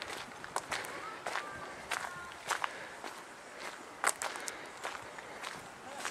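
Footsteps on the gravel and dirt of a disused railway bed, walking at a steady pace of about two steps a second.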